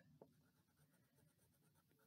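Near silence with faint scratching of a wax crayon coloring on paper.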